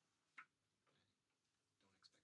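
Near silence: room tone, with one short faint click a little under half a second in.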